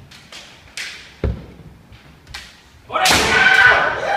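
Kendo bout: a few sharp clacks of bamboo shinai and a heavy stamp of a bare foot on the wooden floor, then from about three seconds in, a loud drawn-out kiai shout.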